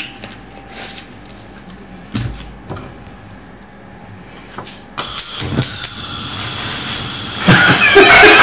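A gas hob burner lit about five seconds in: a loud, steady hiss starts suddenly and runs on. Before it there is only a low background with a single knock. Voices come in near the end.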